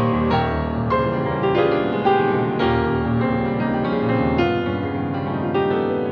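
Solo grand piano playing a fast, dense classical passage: quick runs of notes higher up over sustained bass notes.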